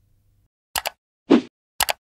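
Animated end-screen sound effects: a quick double click about three-quarters of a second in, a short pop about half a second later, and another double click near the end.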